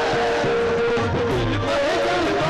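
Live qawwali music: a harmonium holding a steady note under a male voice singing a long, gliding wordless phrase, with a few low drum strokes about a second in.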